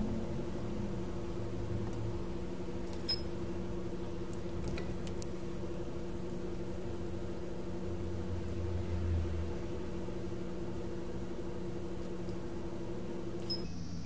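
A steady mechanical hum with a few faint ticks.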